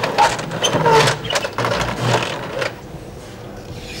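Roller shutter being handled, its slats rattling and knocking in a quick mechanical clatter with a few squeaks, dying down to a quieter background about two-thirds of the way in.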